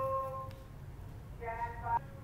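A man's voice making drawn-out, held hesitation sounds: one in the first half second and another near the end. Under it runs a steady low hum.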